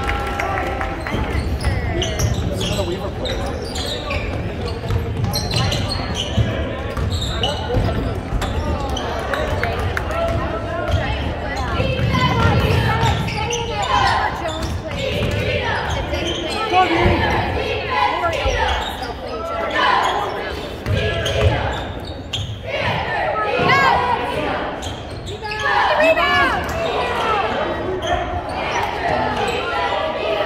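Basketball bouncing on a hardwood gym floor during live play, with players' and spectators' voices echoing around the gym.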